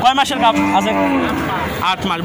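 A cow mooing once, a loud, long call, with men's voices around it.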